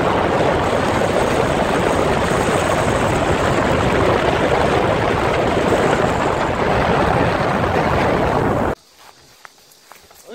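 Loud, steady rush of wind and road noise from a vehicle driving along a road, with no clear engine note; it cuts off suddenly near the end.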